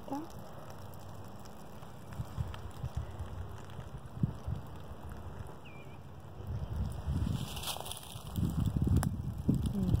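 Footsteps rustling and crackling through dry leaf litter, with low rumbling thumps of handling and wind on the microphone; the sounds grow louder over the last few seconds.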